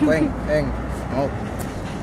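A young man's voice in a few short syllables of rapping, over a low steady rumble of street noise.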